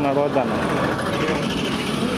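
Street traffic noise from a busy road, a steady mix of vehicle engines, with a voice trailing off about half a second in.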